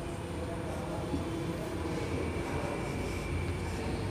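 Steady low background rumble and hum, with a faint thin high tone coming and going.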